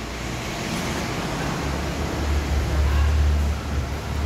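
Mitsubishi Xpander's engine idling: a low steady hum that grows stronger about one and a half seconds in, over a background hiss.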